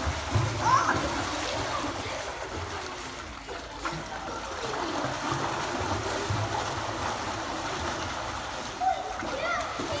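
Children kicking and splashing in a swimming pool: a steady wash of churning water, with children's voices calling out shortly after the start and again near the end.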